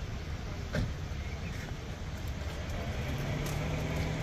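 Traffic noise from a jam of stationary vehicles: a steady low rumble of idling engines, with a short knock a little under a second in. Over the last second one nearby engine's idling hum comes through more clearly.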